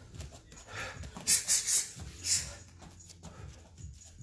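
Sharp hissed exhalations by a person, three in quick succession and a fourth about half a second later, the breathing-out that goes with each strike of a jab, jab, cross, side kick combination.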